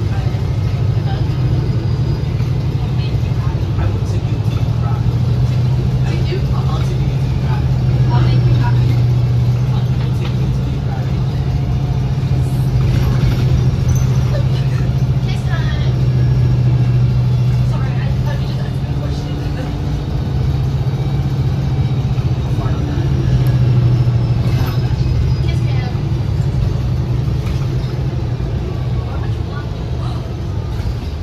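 Cabin sound of a 2019 New Flyer XD60 articulated diesel bus on the move: a steady low engine drone that swells and eases several times as the bus pulls and slows, over road noise, with scattered small rattles from the cabin.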